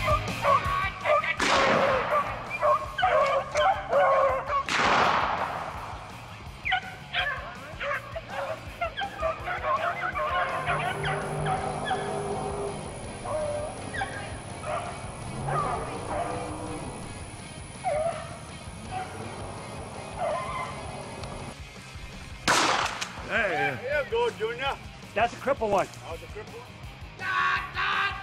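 A pack of rabbit hounds baying on a running rabbit, in short, broken calls throughout, over background music. A few brief sweeping rushes of noise come near the start and again about three-quarters of the way in.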